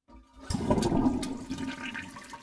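Intro sound effect for an animated channel logo: a loud, rushing, swirling sound that comes in sharply about half a second in and fades away near the end.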